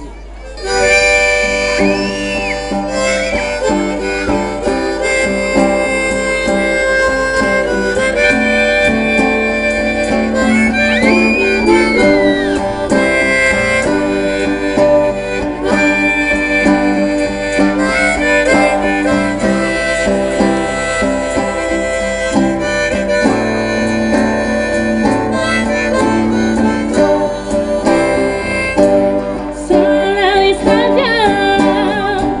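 Live band playing an instrumental passage, with acoustic guitars and electric bass under a sustained lead melody that bends in pitch now and then. The music comes in about a second in.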